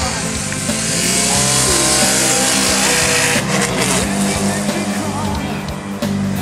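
Rally car engine running hard as the car passes at speed, a loud rush that swells over the first few seconds and then falls away. Rock music with a steady beat plays over it.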